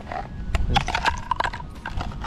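Thin ice plates at a water's edge cracking and clinking as they break up, a rapid series of sharp clicks and knocks.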